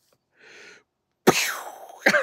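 A man's faint breath in, then a little over a second in a sudden, loud vocal outburst that falls in pitch.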